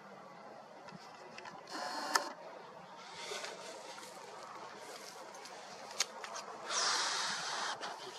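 Faint outdoor hiss with a few sharp camera-handling clicks and two short gusts of wind rushing across the microphone, one early on and a longer one near the end.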